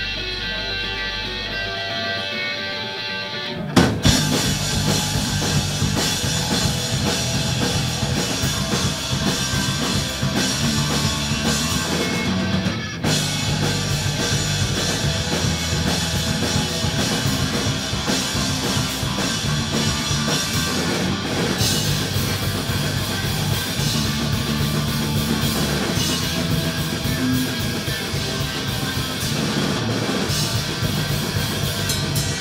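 Live punk-rock band playing an instrumental intro: electric guitar alone at first, then drums, bass and distorted guitars crash in together with a loud hit about four seconds in and drive on at full volume.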